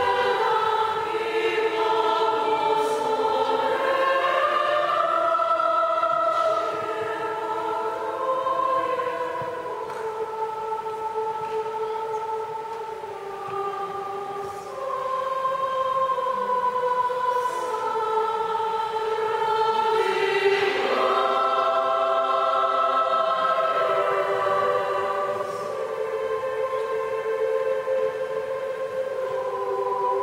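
A girls' choir singing in several sustained parts, with no beat or percussion. It grows quieter for a stretch in the middle, then swells louder again from about fifteen seconds in.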